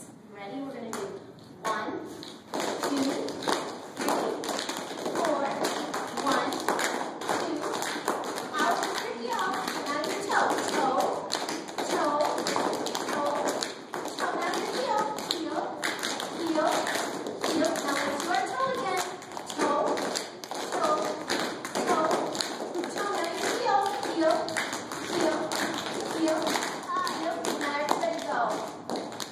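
Children's tap shoes clicking on a hard floor in irregular, overlapping taps from several dancers, with voices talking throughout.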